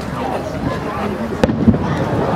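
One sharp bang from a fireworks shell about a second and a half in, over the steady chatter of a crowd of spectators.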